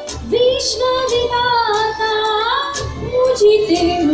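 Massed choir singing in unison, with long held notes that bend slowly in pitch and a short break in the singing at the start.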